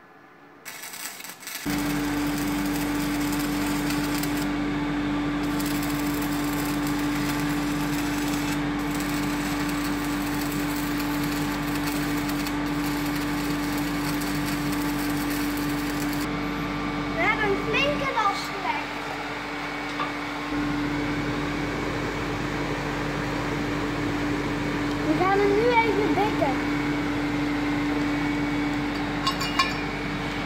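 Stick (MMA) arc welding with a 3.2 mm electrode on steel. The arc strikes about two seconds in, then crackles and buzzes steadily with a constant hum. It falters briefly past the middle before carrying on.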